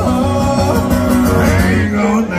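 Live solo country performance heard through a festival PA: a strummed acoustic guitar with a man singing, a held, sliding vocal line near the end.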